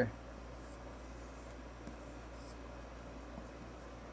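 Dry-erase marker scratching and squeaking faintly on a whiteboard as a box is drawn and letters are written, over a low steady hum.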